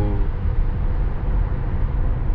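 Steady low road noise inside a Tesla Model S Plaid's cabin, cruising on a highway at about 64 mph.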